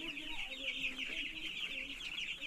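A brood of broiler chicks peeping continuously, many overlapping chirps at once.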